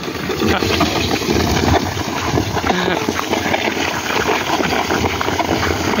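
Sun-dried corn kernels scraped across a concrete floor by wooden pushers, rattling and hissing in a steady, dense crackle of many small clicks.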